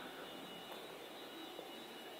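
Faint steady room tone with a thin, high-pitched steady whine in it.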